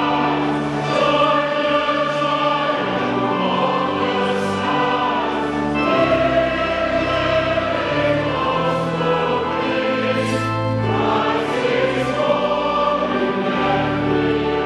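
A congregation and choir singing a hymn together, in held notes that move from one to the next without a break.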